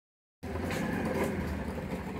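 A steady low rumble of vehicle noise with a hiss, starting a moment in.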